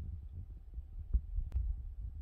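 Handling noise from a handheld camera as it moves closer to a small plastic toy figure: an uneven low rumble with a faint steady hum, and two small clicks about a second and a second and a half in.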